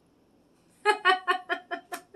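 A woman's laugh breaking out about a second in: a quick run of short "ha" bursts, about six a second, each falling in pitch, loudest at the start and tapering off.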